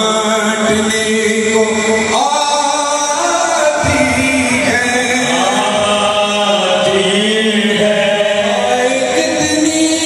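A noha, a Shia mourning lament, sung by a male reciter into a microphone and carried over a hall's PA, in long held notes that bend in pitch.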